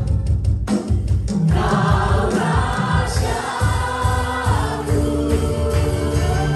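Live Indonesian worship song: female worship leaders singing in several voices over a band with drums, with a steady beat. After a short break in the singing with drum hits, the voices come back in about a second and a half in.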